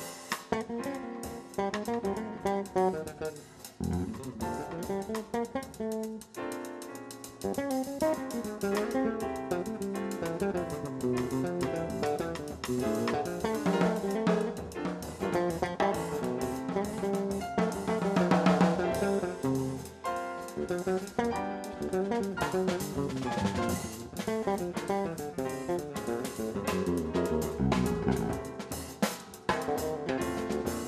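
A jazz trio playing live: guitar lines over a drum kit with cymbals and snare.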